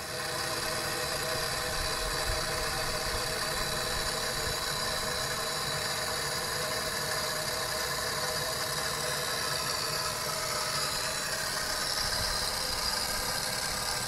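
Steady machine hum with a high-pitched whine over it, unchanging throughout, like a small motor or powered equipment running.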